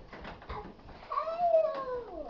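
A high-pitched, drawn-out cry that rises a little and then slides down in pitch over about a second, after a few soft knocks early on.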